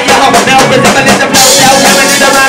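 Live rock band playing loudly, with electric guitar, violin and vocals. The top end brightens sharply about one and a half seconds in.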